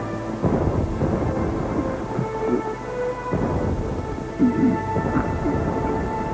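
Deep rumbling booms that swell several times, over background music with long held notes.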